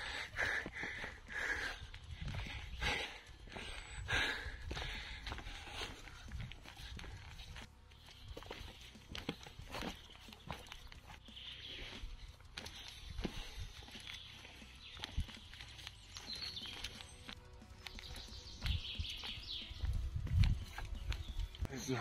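Footsteps of hikers walking down a dirt forest trail, irregular steps with some rustling, with faint music in the background.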